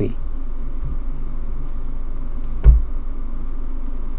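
Low steady hum with a single dull knock about two and a half seconds in.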